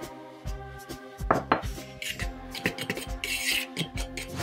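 A metal utensil stirring dry flour in a plastic mixing bowl, making repeated light clicks and scrapes against the bowl, with a brief scraping rustle about three seconds in, over soft background music.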